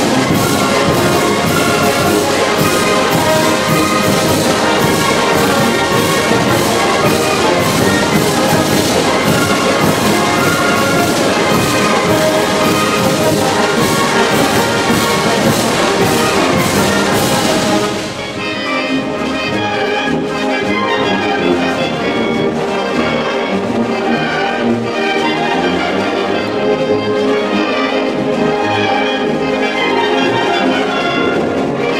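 Large Oaxacan wind band (banda filarmónica) of clarinets, saxophones, trumpets, trombones and sousaphones playing a Mixe son y jarabe, with a steady percussion beat. About eighteen seconds in the cymbals and percussion cut off suddenly and the band plays on more softly.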